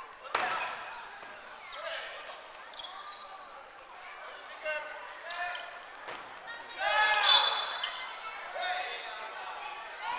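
Players shouting and calling out to each other in a large gymnasium, with a sharp slap about a third of a second in as the big kin-ball is struck. The loudest burst of shouting comes about seven seconds in.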